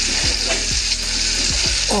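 Spaghetti cooking in a pot of cream on the stove, hissing and sizzling steadily while a spatula stirs it.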